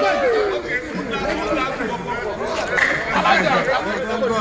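A group of men talking and calling out over one another. One voice holds a long note that slides down just after the start.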